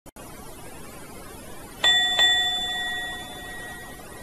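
Elevator arrival chime: two bell-like dings close together, the second ringing on and fading away over about a second and a half.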